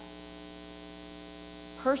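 Steady electrical mains hum: an even drone made of several steady tones.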